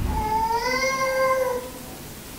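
A single drawn-out, high-pitched vocal call that rises slightly and then falls away, lasting about a second and a half, with a soft knock just before it.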